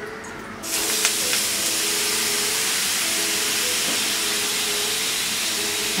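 Water sprinkled onto a hot flat non-stick tawa, hissing and sizzling as it hits the hot surface; the hiss starts suddenly about half a second in and stays steady.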